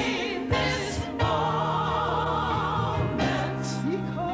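A small gospel vocal group singing together into microphones, several voices in harmony with wide vibrato over sustained low notes.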